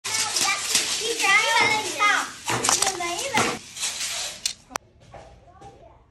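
Young children chattering and calling out over one another. The voices stop about four seconds in, followed by a couple of sharp clicks.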